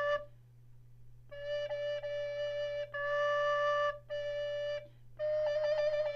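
Treble recorder sounding held notes around E flat: a note ends just after the start, then after a short gap come four separate notes. The last, starting about five seconds in, is a quick trill from E flat to an alternative D fingering, a D that is weak and a bit sharp and cannot be blown hard.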